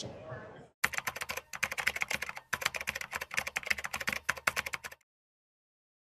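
Rapid computer-keyboard typing, a fast run of key clicks with a brief pause about two and a half seconds in, stopping abruptly about five seconds in. It is a typing sound effect laid under the title card.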